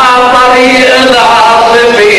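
A man's voice chanting a long drawn-out line of Lebanese zajal verse into a microphone, the held notes bending slowly in pitch.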